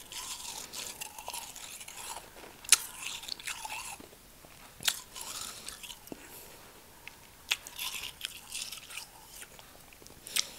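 Close-miked mouth sounds of eating real snow from a packed snowball: about three sharp crunching bites, each followed by a spell of soft, crackly chewing.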